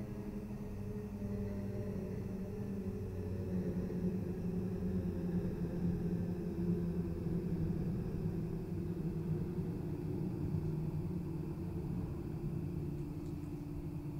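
A low, rumbling drone of several sustained tones that drift slowly and swell a little in the middle: an ominous horror-film sound-design bed.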